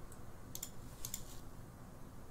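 Faint clicking at a computer: a handful of quick light clicks in two small clusters, about half a second and about a second in.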